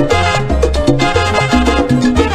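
Salsa band playing an instrumental passage with no singing: a bass repeating a short figure of low notes about twice a second under Latin percussion and piano and horn lines.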